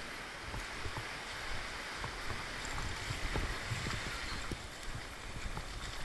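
Steady rush of small waves washing up and back over the sand.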